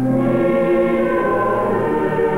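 Choir singing slow, held chords.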